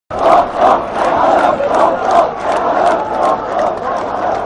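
Large crowd of men chanting and shouting together in a rhythmic, pulsing chant.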